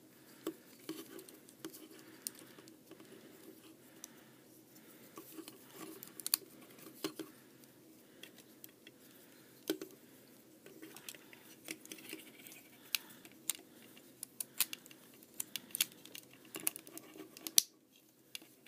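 Hard plastic parts of a Transformers Prime Beast Hunters Megatron action figure clicking, tapping and scraping as it is twisted and folded by hand, in many irregular light clicks.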